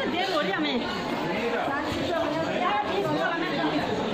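Chatter of several people talking at once, voices overlapping in a crowd.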